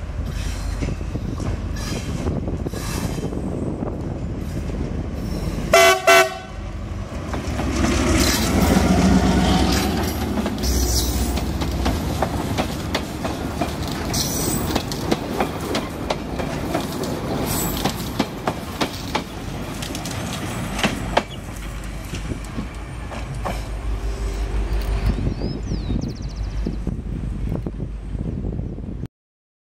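A CRRC Ziyang CDD6A1 diesel-electric locomotive passing close by, hauling passenger coaches. It gives a short horn toot about six seconds in, its engine is loudest a few seconds later as it goes past, and then the coaches' wheels click over the rail joints as the train runs on by.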